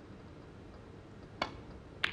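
A single sharp click of a snooker cue tip striking the cue ball, about one and a half seconds in, over a quiet arena hush.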